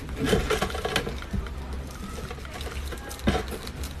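A starfish's hard, spiny skin crackling and snapping as it is pried apart by hand: a cluster of crackles in the first second and one sharp crack a little after three seconds in.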